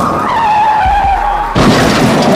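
Car tyres screeching in a skid, a squeal that dips slightly in pitch. About a second and a half in it breaks off into a loud crash of a car collision with breaking glass.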